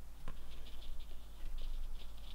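Small watercolour brush dabbing and scratching on watercolour paper in short, soft, repeated strokes, working texture into wet paint.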